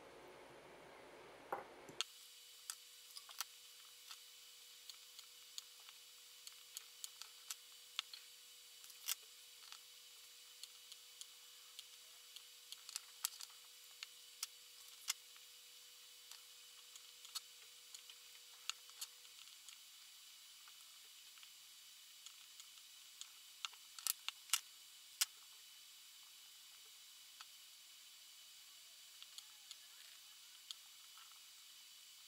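Handheld battery spot welder firing pulses into nickel strip on 18650 lithium-ion cells: a long series of short sharp snaps, irregularly spaced and bunched closely together in places. A faint steady tone runs under the first two-thirds and then stops.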